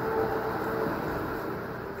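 Steady background hum of a room between sentences, with a faint steady tone that stops about a second in.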